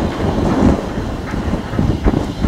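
Norfolk & Western steam locomotive working a passenger train, its exhaust beating in a steady rhythm about two beats a second. Wind buffets the microphone.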